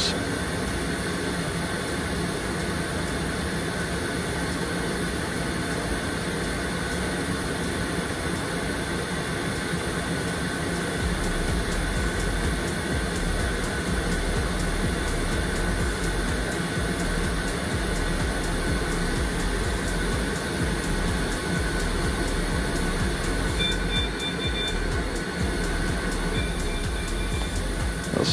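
Steady running noise of a Boeing 757's auxiliary power unit and equipment cooling fans, with the RB211 engine not yet turning. About eleven seconds in, a deeper hum joins and holds: the hydraulic system being pressurised for the brakes.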